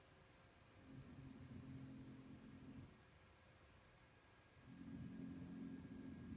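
Near silence: room tone with a faint, steady low hum that fades in about a second in, drops away near the middle, and returns near the end.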